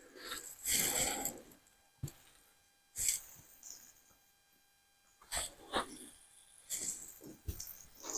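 A paper towel rustling in short, irregular bursts as it is rubbed over the hands, with near-silent gaps between the rubs.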